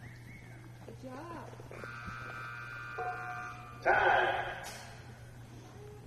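Arena timer buzzer sounding steadily for about two seconds, marking time on the run, followed at once by a loud shout of "time".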